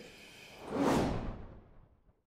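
A whoosh sound effect for an animated logo outro: one broad swish that swells about half a second in, is loudest around a second in, and fades away near the end.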